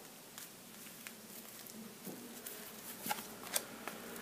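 Oracle cards being handled and laid down on a table: a few faint, scattered taps and slides of card stock, a little more frequent near the end.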